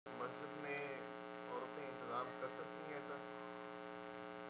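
Faint, steady electrical mains hum, a low buzz that runs unchanged. A faint voice comes and goes underneath it during the first three seconds.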